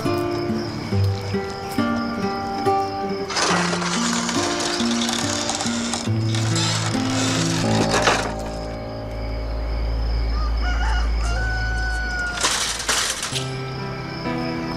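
Background soundtrack music of held notes, with a rooster crowing over it.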